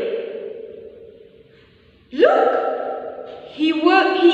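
A woman's high voice drawing out long, held syllables in a sing-song way. The first note fades away over the first second and a half. A new held note starts sharply, rising in pitch, about two seconds in, and another starts near the end.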